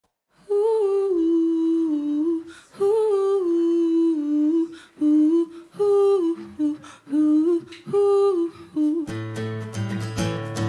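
A woman's voice hums a slow wordless melody alone, in several held phrases with short breaks. About nine seconds in, an acoustic guitar starts strumming underneath.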